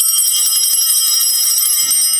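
Small altar bells rung during the eucharistic prayer: a bright, high jingle of several ringing tones that dies away near the end.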